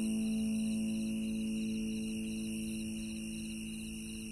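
A low Celtic harp note left ringing and slowly fading. Under it a faint high chirping repeats about three times a second.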